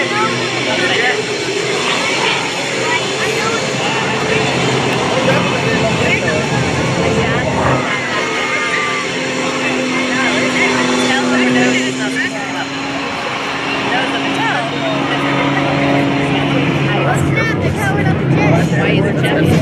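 Extra 330SC aerobatic plane's engine and propeller droning overhead, the pitch drifting slowly as it manoeuvres, with spectators talking close by.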